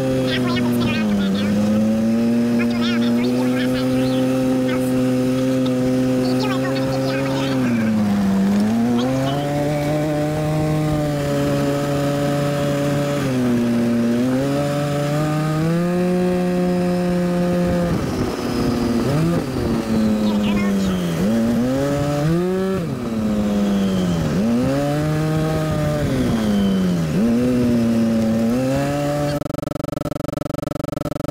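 Polaris RZR 850 side-by-side's engine running under throttle, heard from the cab. Its pitch holds steady for several seconds at a time, then drops and climbs again as the throttle is eased off and reapplied, the dips coming every second or two near the end.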